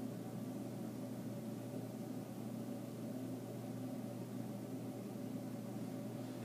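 Steady low hum with a faint hiss, unchanging throughout: room tone.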